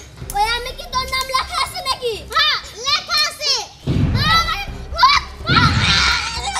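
A young girl's high-pitched voice and a woman's voice, talking and crying out over each other in short bursts, with two short muffled rumbles, about four seconds in and again near the end.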